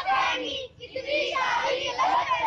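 Children singing, with held, sliding notes broken by short pauses.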